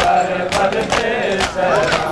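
A crowd of men chanting a Muharram noha in unison, punctuated by regular sharp slaps of matam, hands striking chests in time with the lament.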